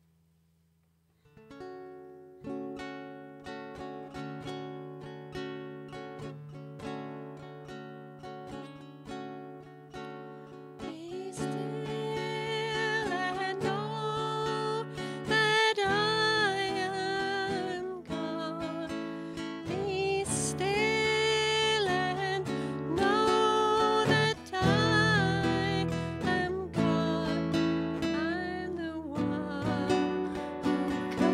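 A woman sings a slow song to her own acoustic guitar. Plucked guitar notes begin about a second in, and her voice enters about eleven seconds in.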